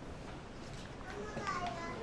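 Faint murmur of voices in a hall, with a few brief, faint higher-pitched voices from about a second in.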